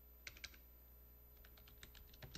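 Faint quick clicks in two small clusters, a few near the start and more near the end, over near silence.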